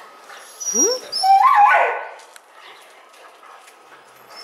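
A dog gives one short, high, wavering whine about a second in.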